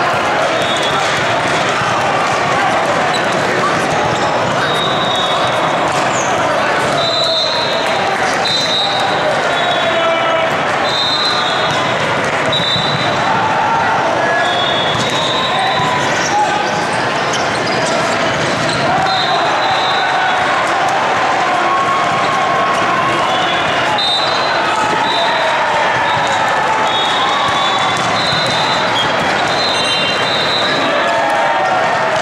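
Busy indoor volleyball hall din: many people talking at once, balls being hit and bouncing on the courts, and repeated short high-pitched squeaks scattered through it.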